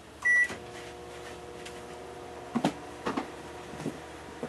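Microwave oven beeps once as its start button is pressed, then starts running with a steady hum while heating. A few light knocks come in the second half.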